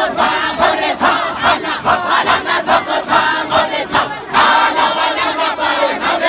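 A large group of men chanting loudly together in a dahira, a Sufi devotional chant, with a strong rhythmic pulse about three times a second. A fresh phrase begins about four seconds in.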